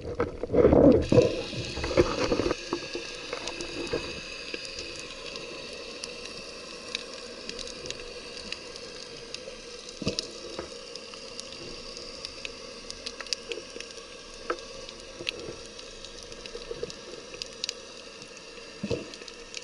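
Underwater sound heard through an action camera's waterproof housing. For the first two seconds or so there is a louder rush of water as the diver moves. After that a steady faint hiss runs with scattered sharp crackling clicks.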